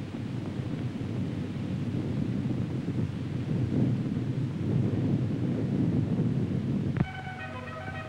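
Low, steady rumble of a nuclear explosion on an old film soundtrack. About seven seconds in it cuts off suddenly and music with held notes begins.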